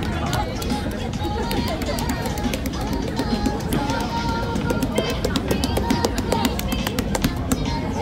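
Street ambience of a crowded pedestrian street: music playing over the chatter of passers-by, with many sharp ticks and knocks throughout.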